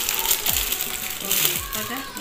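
Bangles clinking against each other, with clear plastic wrapping crinkling as they are handled, twice in quick flurries. Background music with a low beat about once a second runs underneath.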